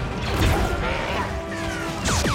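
Sci-fi blaster fire and impacts in a film gunfight, with a few falling zaps near the end, over background score.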